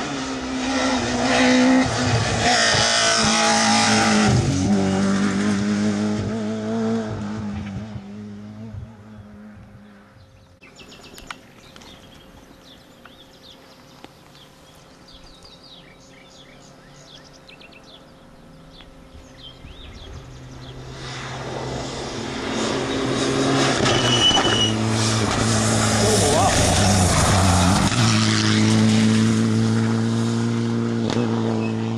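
Rally cars at racing speed on a tarmac stage: one car's engine is loud as it passes and fades away over the first several seconds. A quiet lull with faint short chirps follows. From about twenty seconds in, the next car's engine grows loud as it approaches.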